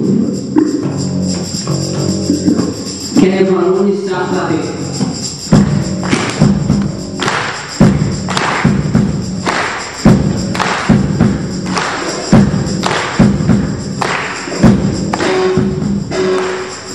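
A live rock band of electric guitar, bass guitar and drum kit playing a song. From about five seconds in, the drums set a steady beat under the guitars.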